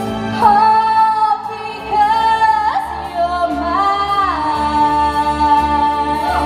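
A woman singing live into a microphone over backing music: high, wordless held notes, a few short ones and then one long note for nearly two seconds near the end.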